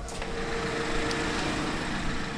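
Car engine idling steadily, a constant hum with a faint steady tone.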